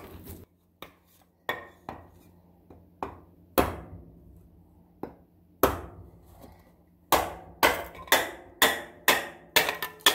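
Hatchet splitting a wooden board into kindling: sharp wooden chopping strikes, scattered at first, then a quick run of about two a second in the last three seconds.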